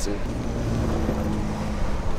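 Street traffic: a motor vehicle's engine running steadily close by, a low hum that fades near the end.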